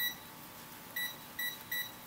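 Handheld digital multimeter giving four short, high beeps, one right at the start and three close together in the second half, as its buttons are pressed to switch it to continuity mode.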